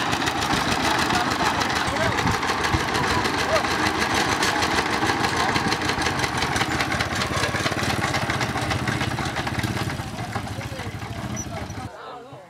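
Two-wheel hand tractor's single-cylinder diesel engine running steadily with a fast, even chugging beat, with faint voices behind it.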